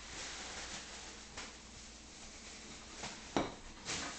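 A few faint knocks and clicks over quiet room noise, the sharpest about three and a half seconds in: a dog shifting on a tile floor with a wooden block in its mouth.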